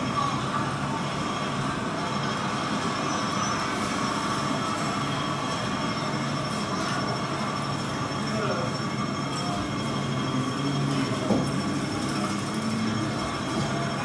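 Steady, dense noise soundtrack played for the dance, like the inside of a moving train, with a faint murmur of voices in it. A single short knock about eleven seconds in.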